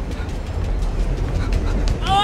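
Steady low rumble of a moving train heard from inside the carriage, with a few faint clicks.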